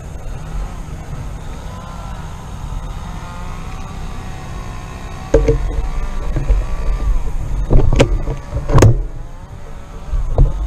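A distant motor drones with a slowly wavering pitch over a low rumble of wind on the microphone. The rumble grows stronger about halfway through, and there are several sharp clicks or knocks, the loudest two close together near the end.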